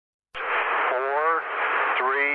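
Radio transmission: a steady hiss of static cuts in abruptly about a third of a second in, with a voice counting down to a rocket launch heard through it.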